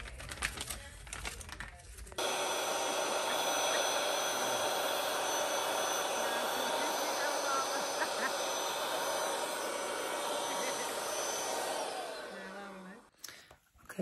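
Handheld electric balloon pump running steadily for about ten seconds, blowing air into a latex balloon, then winding down in pitch as it is switched off. Before it starts there are light clicks and rustling of handling.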